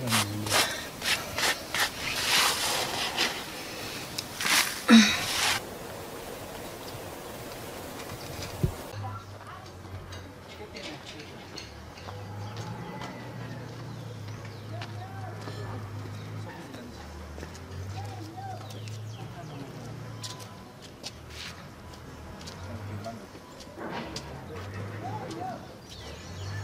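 Rhythmic scraping strokes of a stone batán grinding guiñapo, sprouted dried maize, into meal, stopping about five seconds in. Later come scattered short bird chirps over a low steady hum.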